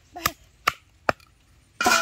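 Three sharp chops of a heavy knife cutting through a raw chicken into a wooden chopping block, about half a second apart. Near the end a short, loud voice cuts in.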